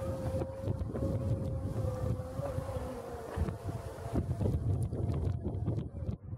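Wind buffeting a compact camera's built-in microphone, a gusty low rumble, with a thin steady tone running underneath for the first four seconds or so before it fades, and a few faint clicks.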